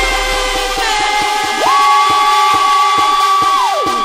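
Thai 'tued' electronic dance remix in a breakdown: the deep bass fades out early, leaving held synth chords. A single high note slides up about a second and a half in, holds, then slides back down near the end.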